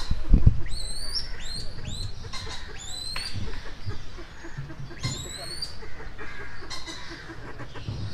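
A bird giving short, high, squeaky calls that hook upward in pitch, in three quick runs: a handful about a second in, three more around three seconds, and two near five seconds.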